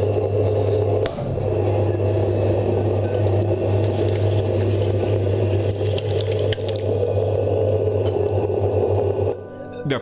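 A potter's wheel running with a steady hum while a large clay pot is shaped by hand on it. The hum cuts off suddenly near the end.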